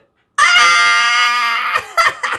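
A man's high-pitched shriek of laughter: one long held squeal of about a second and a half, slowly falling, then breaking into short gasping bursts near the end.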